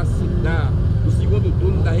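A man speaking over a steady low rumble.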